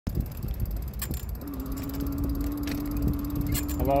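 Juiced Scorpion X e-bike riding along, with low wind and road rumble on the microphone and a steady hum from its hub motor that comes in about a second and a half in. A few sharp clicks or rattles sound over it.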